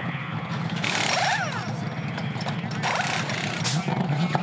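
Pit-stop pneumatic wheel guns rattling in short bursts as wheels are spun off and on, three bursts in all, over the steady low running of a Supercars V8 engine.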